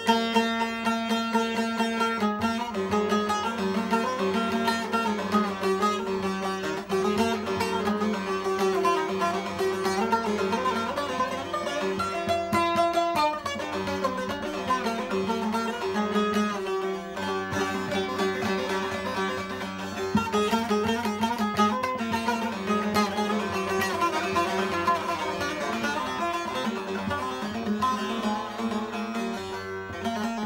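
Newly built long-neck bağlama (uzun sap saz) with a mahogany bowl, played with a plectrum: a quick plucked and strummed melody runs over steady ringing drone notes. The tone is soft and clean.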